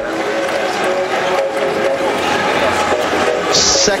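Basketball arena din: crowd noise with held, melodic tones running steadily through it.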